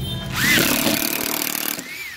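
Makita 12 V cordless screwdriver driving a long steel screw into hard wood: loud motor whine and grinding for about a second and a half, with the motor pitch rising and falling, then cutting off near the end as the screw snaps.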